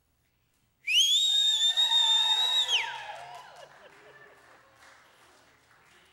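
A loud, shrill human whistle that swoops up in pitch, holds for about two seconds and then drops away. Under it, several voices cheer and fade out about a second after the whistle stops.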